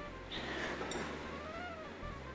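A cat meowing once: a rough start, then one drawn-out call that rises and falls in pitch, over quiet background music.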